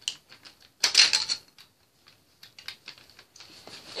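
Plastic toy bricks clicking and rattling as they are handled and pressed onto a Lego build: a quick run of small clicks, loudest in a cluster about a second in.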